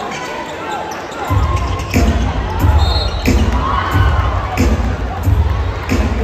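Basketball bouncing on a hardwood court, a sharp thud repeating roughly every two-thirds of a second, over arena crowd noise. A deep low rumble comes in about a second in.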